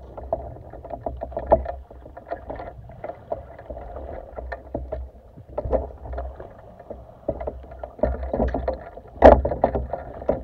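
Muffled water sloshing with irregular knocks and scrapes, heard through a camera in an underwater housing as it is moved about at the surface. A louder burst comes near the end.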